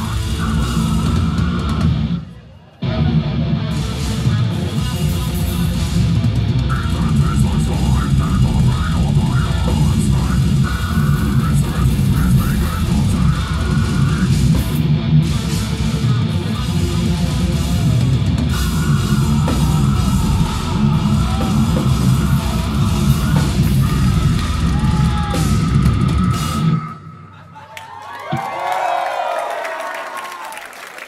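Death metal band playing live: fast, dense distorted guitars and pounding drum kit, with a brief stop about two seconds in. The song ends a few seconds before the end, and crowd cheering and shouting follows.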